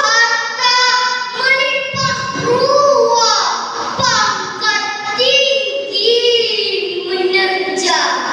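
A girl declaiming a Malay poem into a microphone, in long, drawn-out, almost sung phrases with rising and falling pitch.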